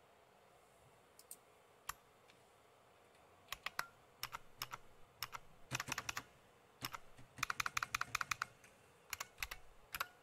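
Keystrokes on a computer keyboard: a few single clicks, then bursts of typing that grow quicker and denser about two thirds of the way in, ending on a final key press as a terminal command is entered.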